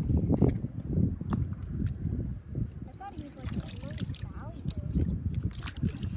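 Indistinct talking, with irregular low rumbling noise and a few sharp clicks underneath.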